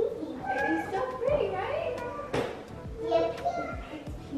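A young child's high voice, talking and vocalising, over faint background music.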